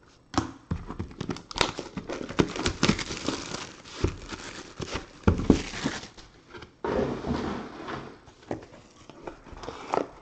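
Hands handling trading cards in clear plastic magnetic holders and the box they come in: rustling with many sharp clicks and taps, in two stretches with a short pause about seven seconds in.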